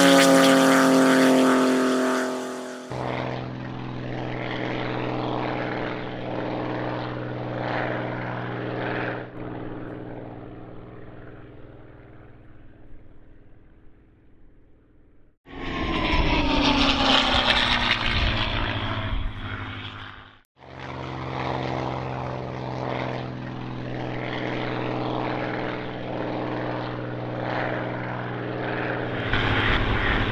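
Propeller fighter plane's piston engine: a pass with falling pitch in the first few seconds, then a steady drone that fades away. About halfway through comes a louder pass with falling pitch, lasting about five seconds and cutting off suddenly, before the steady engine drone resumes.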